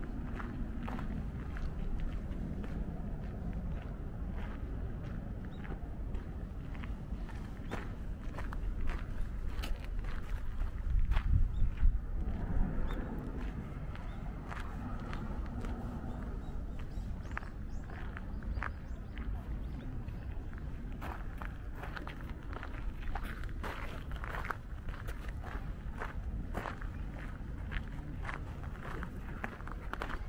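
Footsteps crunching along a gravel garden path at a steady walking pace, over a low rumble that swells louder about ten to thirteen seconds in.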